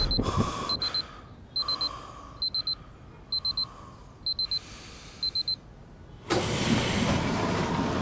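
Electronic alarm beeping: short, high beeps in groups of three or four, repeating a little under once a second, then stopping about five and a half seconds in. About six seconds in, a louder, steady rushing noise takes over.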